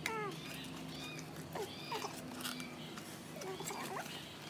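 Light taps and rustles of printed cardboard puzzle walls being handled and slotted together. Short animal calls that fall in pitch sound over it several times: one right at the start, a few in the middle and one near the end.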